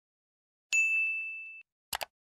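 A notification-style 'ding' sound effect: a single bright bell tone that strikes sharply and rings out for about a second, followed near the end by a short double click like a mouse button.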